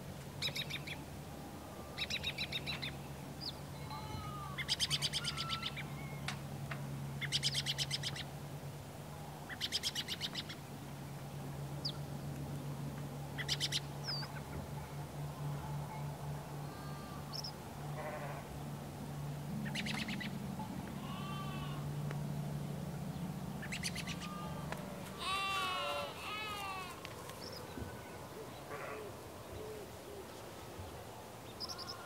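Farm animal ambience: short bleats come every few seconds, mixed with bird calls that cluster into a burst of chirps late on, over a low steady drone.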